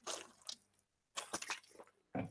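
Faint gulps and swallows of a man drinking from a water bottle: short soft sounds at the start and a quick cluster of them about a second and a half in.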